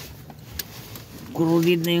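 Speech: a man holding one long, drawn-out filler syllable, after a second or so of faint background noise with a single small click.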